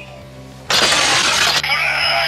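A sudden loud crashing burst about two thirds of a second in, lasting just under a second. It gives way to electronic sound and music from a lit-up Sclash Driver toy transformation belt.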